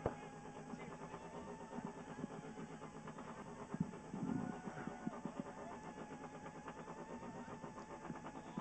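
Rally car engine idling steadily, heard from inside the cabin, with a sharp click right at the start and a few brief knocks around the middle.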